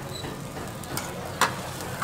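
Stir-fried noodles sizzling on a flat iron griddle while a metal spatula scrapes and lifts them, with one sharp metal clack about a second and a half in.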